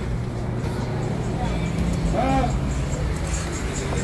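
Steady low rumble of a motor vehicle running, with a short call from a voice a little past two seconds in.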